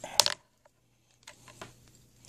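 Coax cable being handled on a wooden workbench: a sharp, brief clatter at the start, then a few faint small clicks.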